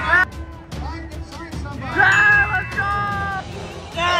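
Music with a singing voice. It drops back just after the start and comes back louder about halfway through, with long held sung notes.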